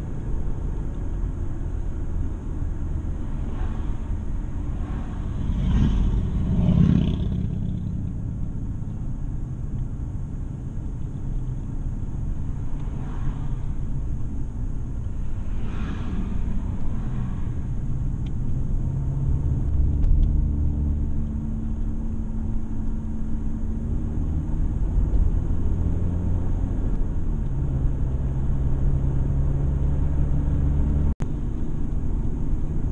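Car engine and tyre noise heard from inside the cabin while driving slowly on a winding mountain road: a steady low rumble with a few brief swells, one of them as an oncoming car passes about sixteen seconds in.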